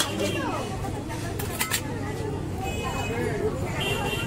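Busy street ambience: overlapping background voices over a steady low hum, with a few sharp clicks near the start and about one and a half seconds in.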